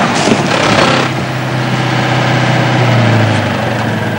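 An engine running steadily with a low hum under a wash of noise; the hum grows a little stronger about three seconds in.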